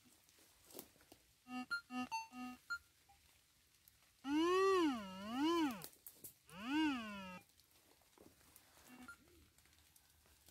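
Metal detector audio: four short electronic beeps about a second and a half in. Then comes a loud warbling target tone whose pitch rises and falls as the coil sweeps back and forth over the dig hole, in two stretches, signalling metal still in the hole.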